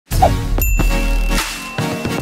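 Intro jingle: a bright ding chime over electronic music with a deep bass, with a high tone ringing on from about half a second in.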